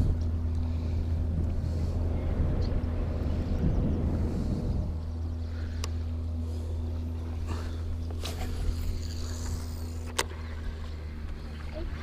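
A boat motor's steady low hum runs throughout. A few short sharp clicks and knocks come in the second half.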